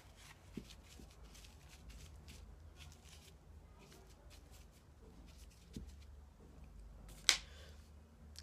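Faint rustling of a paper towel being pressed and smoothed into a glass storage container by hand, with a few light taps and one sharper tick near the end.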